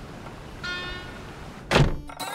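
A car door shutting: one heavy thunk near the end, heard from inside the car.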